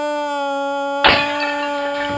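A man's voice holding one steady sung note around D, about 290 Hz, trying to stay on pitch. About a second in, a sudden harsh noise cuts in over the held note.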